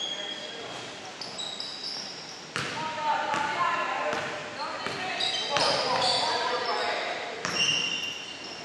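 A basketball is dribbled on a hardwood gym floor, bouncing about every three-quarters of a second from a few seconds in. Short, high sneaker squeaks and players' voices go on around it, echoing in the gym.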